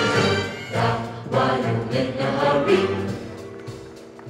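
Show choir singing in many voices over a big-band swing arrangement, with a bass beat about twice a second; the sound thins out near the end before the next phrase.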